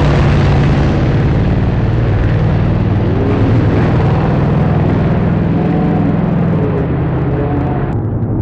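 Drag-racing Mustang's engine at full throttle on a pass down the drag strip just after a wheelstand launch, loud and steady, growing slowly fainter as the car pulls away.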